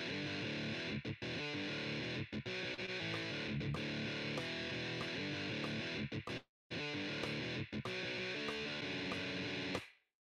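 Guitar Pro notation software playing back a riff on a distorted electric guitar track, rendered from the tab rather than recorded, with the guitar alone and no drums. It runs in choppy riff phrases with short breaks and a brief pause about six seconds in, and stops just before the end.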